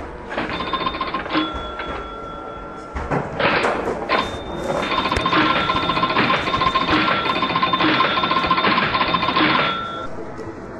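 Amusement arcade sound: electric bells ringing in long bursts, the longest from about five seconds in until just before the end, over a busy background of chimes and clatter from the machines.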